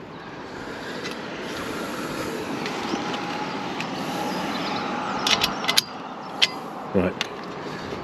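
Steady rushing noise that swells slowly, then cuts off about six seconds in. Just before it ends come a few sharp metal clicks from the steel aerial pole and its chimney bracket being handled, and one more click follows.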